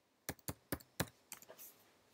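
Typing on a computer keyboard: four crisp key clicks about a quarter second apart, then a few softer taps, as a short command is typed and entered.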